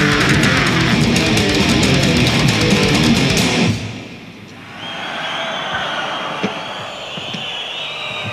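Death metal band playing live at full volume, with distorted electric guitars and fast, dense drumming. The song cuts off abruptly a little under four seconds in. What follows is much quieter: a wash of noise with a thin, high, sustained ringing tone.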